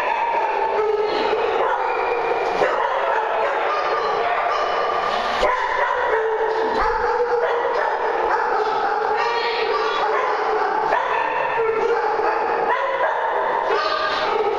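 Several dogs barking and yipping at once, a steady din that hardly lets up.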